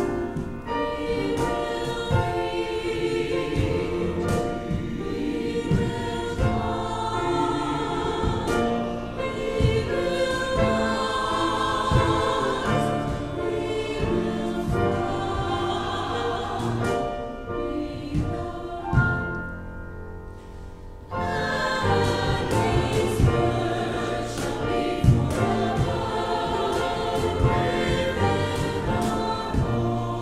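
Mixed church choir of men's and women's voices singing an anthem. It thins to a softer passage about two-thirds of the way through, then comes back at full strength.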